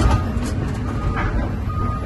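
Diesel engine of a Doosan DX350LC-5 hydraulic excavator running, heard from inside the cab as a steady low rumble while the bucket is moved. A thin, steady high whine comes and goes over it, with a few light clicks.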